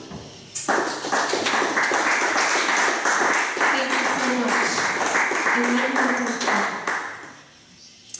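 Audience applauding, starting about half a second in and dying away near the end, with voices calling out over the clapping.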